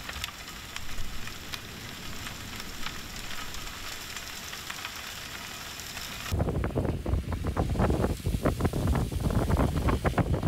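Sand-and-water slurry pumped ashore through a steel dredge pipeline, heard as a steady hiss with fine crackling of sand grains. About six seconds in it cuts abruptly to wind buffeting the microphone.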